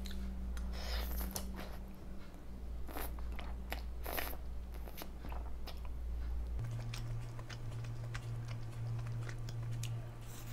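Close-up eating sounds: spaghetti strands slurped in a few noisy bursts, then chewed with many small wet mouth clicks and smacks.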